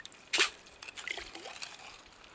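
Plastic ice scoop dipping into slushy water in an ice-fishing hole: a short splash about a third of a second in, followed by small drips and trickles.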